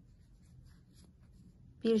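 Faint rubbing and light ticks of a metal crochet hook drawing chenille yarn through stitches, with a spoken word starting near the end.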